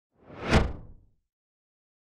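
A single whoosh sound effect: a rush of noise that swells quickly to a peak about half a second in, then fades away over the next half second.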